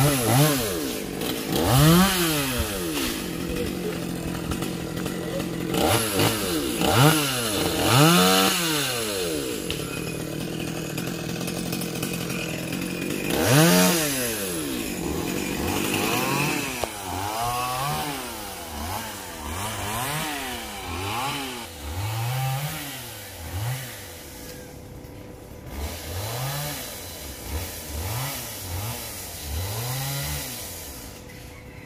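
Small two-stroke chainsaw revved up and down over and over, each rev a rising then falling whine, with the loudest near the start and in the middle. In the second half the revs come quicker and lighter, about one a second, and the saw sounds fainter.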